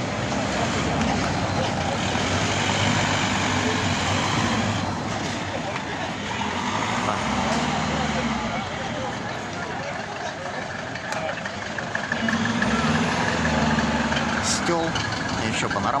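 Busy street ambience: a motor vehicle's engine running close by, its low hum swelling twice, over the chatter of people walking past.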